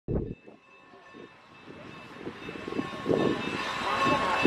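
Norfolk & Western 4-8-0 steam locomotive No. 475 working in reverse, its puffing exhaust growing louder as it approaches. A short thump at the very start.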